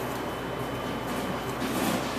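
Steady low room hum. Near the end comes a faint rustle of hands working over the feathers of a bird specimen.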